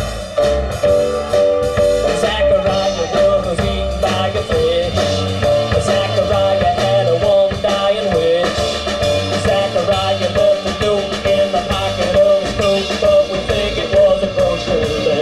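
A small band playing an instrumental break: drum kit keeping a steady beat under a walking upright bass, with a lead melody that bends and wavers in pitch over the top.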